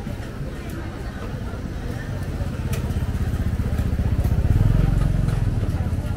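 A motorcycle engine passing close by, growing louder to a peak near the end and then beginning to fade.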